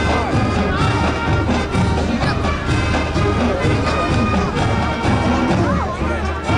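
Marching band playing: brass instruments carrying sustained tones over a steady beat of drum hits.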